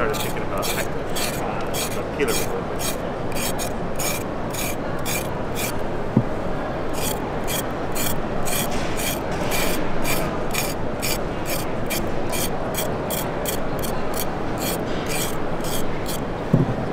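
ShanZu chef's knife blade scraping down a raw carrot in quick repeated strokes, about two or three a second, shaving it into fine gratings. The strokes pause briefly about a third of the way in, over a steady background hum.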